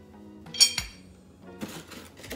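A single sharp clink with a brief ringing tail about half a second in, as items are handled in a cardboard shipping box of barbell plates and clips. Soft rustling in the box follows near the end, over quiet background music.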